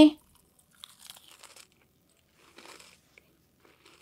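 Close-miked ASMR biting and chewing of a green jelly candy: faint soft crunches in short clusters, one about a second in and another near three seconds.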